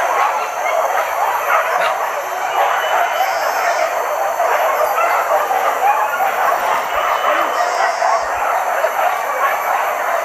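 A pack of hunting dogs barking and yelping together, a continuous overlapping din with no single bark standing out, over a thin steady ringing of forest insects.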